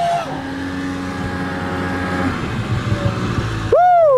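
Snowmobile engine running steadily, then a man's loud shout near the end.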